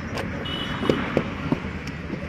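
Hand-moulding clay bricks: several short knocks and thuds of wet clay and a brick mould being handled, over a steady low engine-like rumble.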